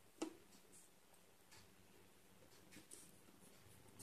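Near silence with a few faint light ticks and scrapes from a soldering iron tip and solder wire touching a veroboard, one sharper tick just after the start.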